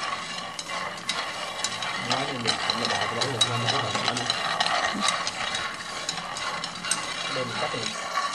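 Raw peanuts being dry-roasted and stirred with wooden chopsticks in a nonstick frying pan: a steady rattle of many small clicks as the nuts tumble against the pan and each other.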